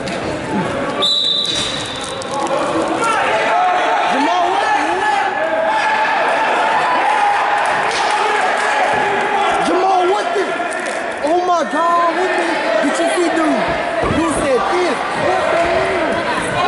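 A referee's whistle gives one short blast about a second in, starting the wrestling bout. Spectators and coaches then shout and yell continuously, with occasional thumps.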